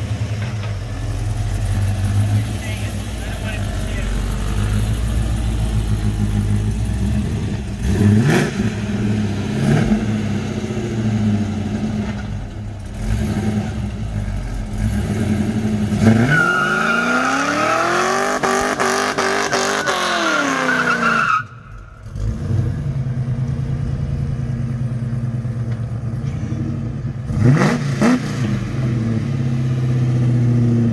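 A 1960s Chevrolet Impala's engine idling, blipped a couple of times, then revved hard for about five seconds, the pitch rising and falling, in a burnout. It cuts out sharply for a moment, then idles on with one more rev near the end. The rear tires spin together through a newly fitted positraction differential rather than as a one-wheel peel.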